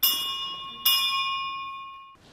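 A bell struck twice, the second strike just under a second after the first, each ringing on with a bright, high tone and slowly fading.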